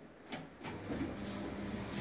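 Lift machinery: a sharp click about a third of a second in, then a steady mechanical hum with a low tone that builds slightly as the lift's door drive starts up.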